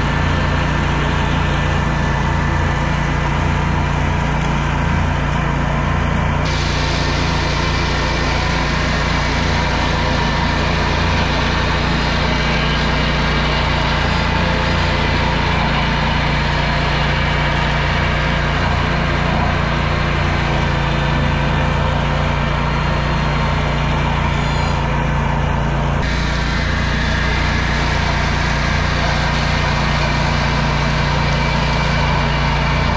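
Ventrac compact tractor engine running steadily under load, with its Tough Cut mower deck spinning as it cuts through tall, overgrown grass and weeds.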